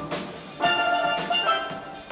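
Steel band playing a soca tune on steelpans: many bright, ringing struck notes in a quick rhythm. The band gets louder about half a second in.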